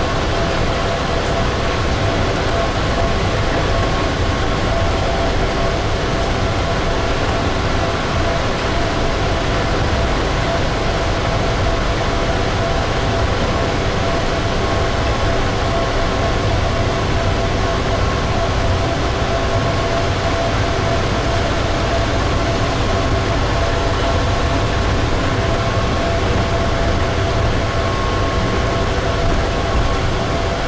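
Gatwick airport people mover, a driverless rubber-tyred shuttle train, heard from inside the car while running along its guideway: a constant rumble with a steady multi-tone whine from the vehicle.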